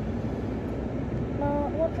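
Steady low rumble of road and engine noise inside a car's cabin.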